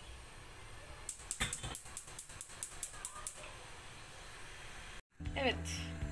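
Light clinks of a glass bowl and metal pan being handled and set down, a quick run of about a dozen small knocks over two seconds while a double boiler is set up to melt white chocolate.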